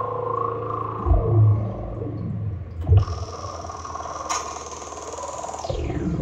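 Access Virus TI2 synthesizer playing its PointCldRD preset: deep bass notes struck about one and three seconds in under sustained tones that glide in pitch. A high layer enters about three seconds in and sweeps down in pitch near the end.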